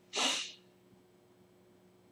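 A person's short, sharp breath through the nose, about half a second long, right at the start, then near silence.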